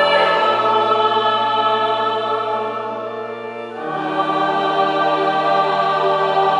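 A choir singing slow, sustained chords. The chord changes about half a second in, softens, then swells into a new chord near four seconds in.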